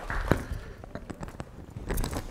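Footsteps and scattered light knocks on a stage floor as people walk and settle into chairs: a dozen or so short clicks, the loudest one near the end.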